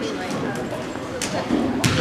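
Spectators and players talking over one another in an echoing gymnasium, with a few sharp knocks; the loudest comes just before the end.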